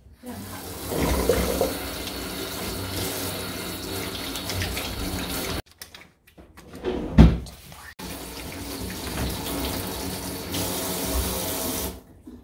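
Water running from a kitchen tap into a stainless steel sink and splashing over hands being washed, in two stretches that start and stop abruptly, with a short break about halfway holding a brief louder sound.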